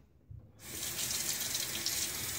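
Bathroom sink faucet running water into the basin, turned on about half a second in and running as a steady hiss.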